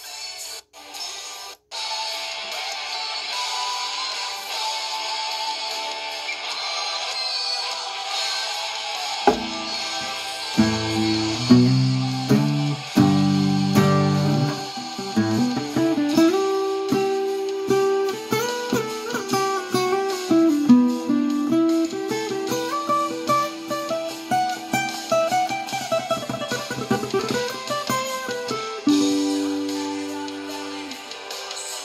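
Steel-string acoustic guitar picking a melodic solo line over a recorded backing track. The backing alone is heard at first, and the guitar's plucked notes come in about nine seconds in, stepping up and down.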